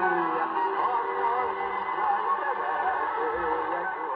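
Music received from a mediumwave AM broadcast station, played through the Sailor 66T marine receiver's loudspeaker, with a wavering melodic line and no high treble.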